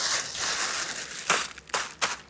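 Plastic oven-roasting bag crinkling and rustling as hands knead the turkey leg, vegetables and liquid inside it, with a couple of sharper crackles in the second half.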